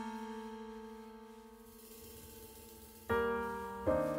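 Background piano music: slow, sustained chords that fade away. One chord dies out over the first two seconds, there is a brief gap, then new chords strike just after three seconds and again near the end.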